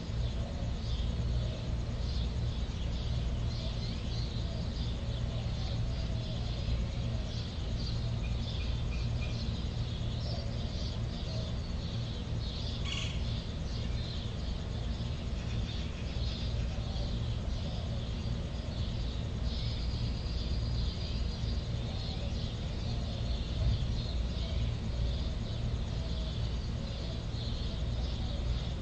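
Outdoor nature ambience: a steady low rumble under a continual scatter of short, high chirps, with one longer high note about two-thirds of the way through.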